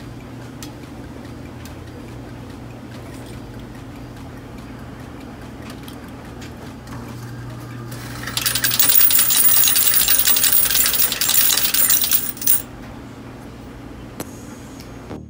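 Coin change machine dispensing coins into its metal hopper: a loud, dense clatter of coins that starts about eight seconds in and lasts about four seconds, after a $5 bill is fed in. A low steady hum runs under the first part.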